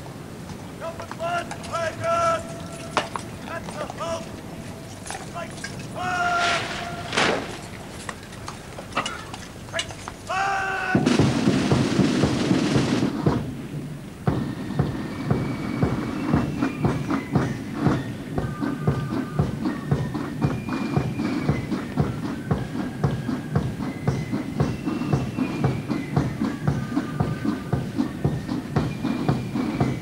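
Long drawn-out shouted words of command carry across the parade ground for about the first ten seconds. Then the massed military bands strike up a march with a loud drum roll, and the march carries on with a steady drumbeat under held brass melody notes.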